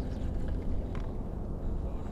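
Low, steady rumble of wind buffeting the microphone, with a couple of faint ticks, the clearest about a second in.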